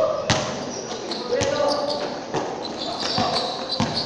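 A basketball bouncing on a hard court floor, about five irregularly spaced thuds, with voices calling in the background.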